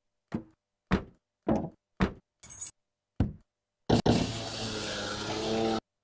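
Recorded car-noise samples auditioned one key at a time in a sample editor: a string of short knocks and thunks, about one every half second. Near four seconds in, a longer sample with a steady low tone under a noisy hiss plays for about two seconds and cuts off suddenly.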